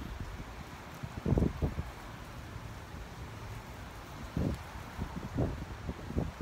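Outdoor wind blowing across the microphone, a steady low rush with a few short low buffets from gusts.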